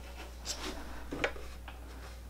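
Faint handling noise from a small plastic light box being lifted off a table: a few soft brief clicks and rubs over a low steady hum.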